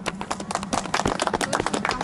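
A small group of people applauding, a quick irregular patter of hand claps.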